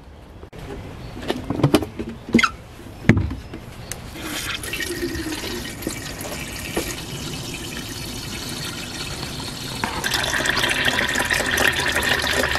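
Water pouring from a gravity-fed bucket spigot through a PVC outlet into the empty plastic tub of a small portable washing machine. A few knocks come in the first seconds, then a steady stream of filling starts about four seconds in and grows louder near the end.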